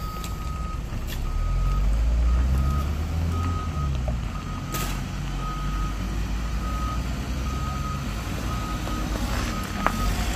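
A vehicle's reverse-warning beeper sounds a steady series of evenly spaced single-pitch beeps, over a low vehicle engine rumble that swells for a couple of seconds early on.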